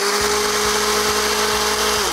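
Countertop personal blender running at a steady pitch, blending a frozen banana, peanut butter and powder with water, and switched off right at the end.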